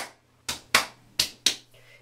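Five short, sharp taps or clicks at uneven intervals, about two a second, each with a brief ring.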